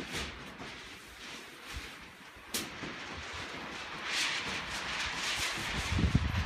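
Steady rushing noise with one sharp knock about two and a half seconds in and a louder swell of hiss about four seconds in, as roofers handle steel roof panels on the purlins.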